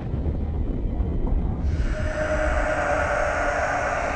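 Horror-trailer sound design: a deep, steady rumble, joined a little under two seconds in by a sustained droning tone over a hiss that holds to the end.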